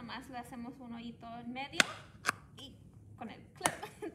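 An unbent paper clip being forced through the bottom of a cup, giving three sharp clicks a second or so apart as the point pokes through; it is a little hard to poke through. Low speech runs under the first half.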